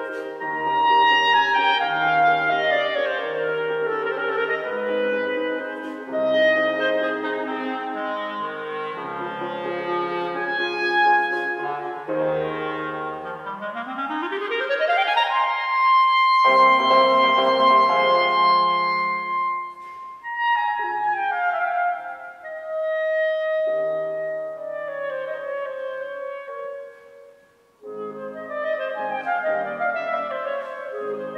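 A solo melody instrument playing classical music with piano accompaniment. About halfway through, it makes a long, smooth upward slide into a held high note. Near the end there is a brief pause before the music goes on.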